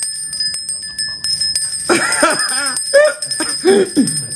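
A small bell ringing on, with a steady high-pitched ring and a few light clicks in the first second and a half. Halfway through, a person's voice rises over it.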